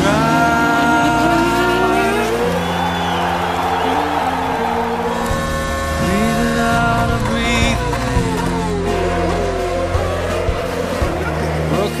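Formula 1 car engine revving, its pitch sweeping up and down several times, mixed over background rock music.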